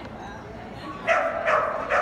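A dog barking three times in quick succession, starting about a second in.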